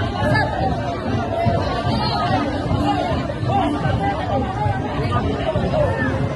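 Crowd chatter: many voices talking over each other at once, a steady hubbub with no single voice standing out.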